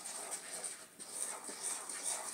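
Spoon stirring cake batter in a stainless steel bowl: soft scraping with a few light knocks against the bowl.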